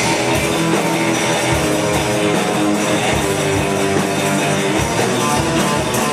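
Live rock band playing: electric guitars over a drum kit, with regular kick-drum hits and a steady, loud level.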